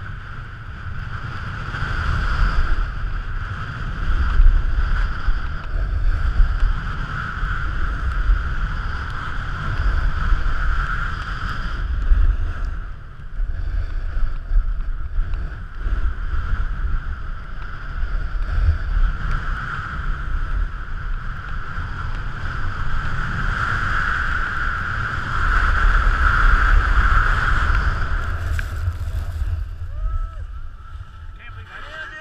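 Wind buffeting an action camera's microphone during a fast snowboard run, with the board sliding and scraping over packed snow; the rushing surges and eases and falls away near the end as the rider stops.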